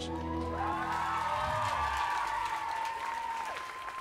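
A live band with drums and electric guitar ending a song, a final held note ringing on as the audience applauds and cheers.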